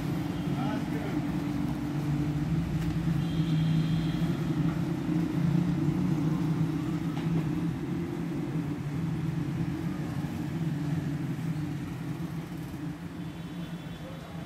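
A steady low hum runs throughout, with faint voices in the background.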